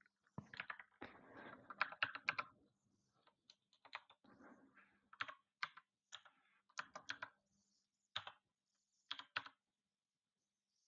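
Faint, irregular keystrokes on a computer keyboard: a quick cluster of taps in the first couple of seconds, then single and paired key presses with pauses between them.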